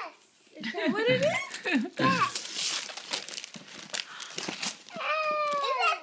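Packaging on a present box being crinkled and torn for about two seconds in the middle, between short wavering voice sounds at the start and near the end.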